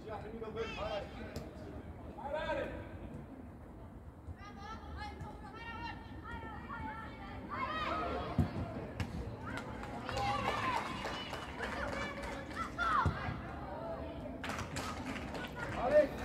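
Voices shouting and calling during a youth football match, some of them high children's voices, with a couple of sharp knocks about halfway through and again later.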